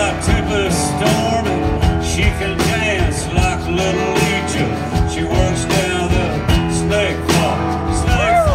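Live band playing a blues-rock groove: acoustic and electric guitars over a steady drum beat, with bending guitar notes.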